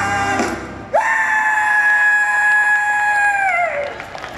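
Singing breaks off, then about a second in a singer lets out one long, high held cry into the microphone over the stage PA. The cry sits steady on one pitch, then slides down and stops near the end.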